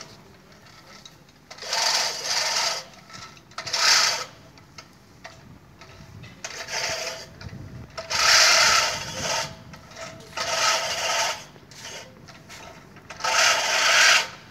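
Manual push reel lawn mower cutting grass: its spinning blade reel whirrs and snips in about six bursts of a second or so, one for each forward push, with quieter pauses between strokes.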